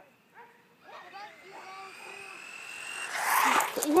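Traxxas Bandit VXL brushless electric RC buggy running, its motor giving a high whine that rises slowly in pitch and grows louder for about two seconds. This is followed by a loud rush of noise near the end as it comes close.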